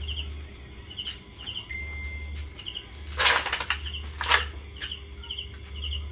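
Insects chirping outdoors, short repeated chirps about once or twice a second, crickets by their sound. Two loud rustling swishes about three and four seconds in are the loudest sounds.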